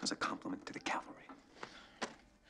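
Speech only: a man's voice speaking softly, much of it breathy and near a whisper.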